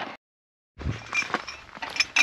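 A cut to a moment of dead silence, then a low thump and a few light metallic clinks and knocks of tools at a vehicle wheel.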